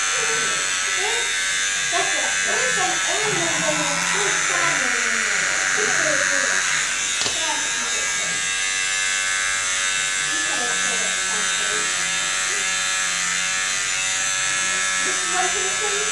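Corded electric hair clippers running with a steady buzz as they cut a boy's short hair, with voices talking over them for much of the time.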